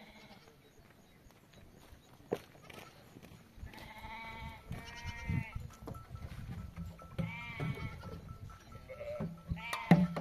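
Livestock bleating: four calls, the first two close together about four and five seconds in, then one about seven seconds in and one at the very end. A single sharp knock sounds about two seconds in.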